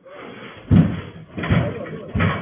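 A snow shovel scraping along the ground, then heavy thuds about a second in and again near the end as the shovelled snow is tossed into a metal cargo tricycle bed.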